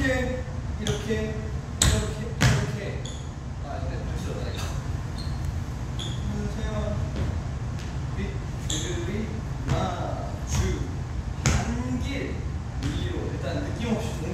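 A man's soft, indistinct vocalizing while he dances, over a steady low room hum. A few sharp knocks come from his sneakers stepping and stomping on a wooden floor; the loudest is about two and a half seconds in.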